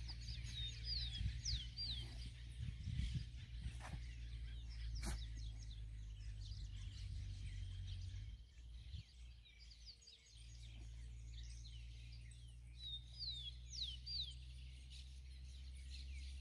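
Small birds chirping in short, quick falling notes, in a cluster about a second in and again near the end, over a steady low rumble. Two sharp clicks fall in the middle.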